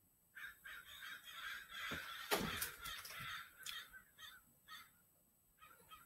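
A flock of crows cawing: a quick run of overlapping calls through the first few seconds, then fainter, more spaced calls near the end. A single thump about two seconds in.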